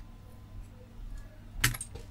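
A sharp metallic click about one and a half seconds in, followed by a few lighter ticks: a small power MOSFET on a motherboard snapping as a hook tool pries its leg up from the board.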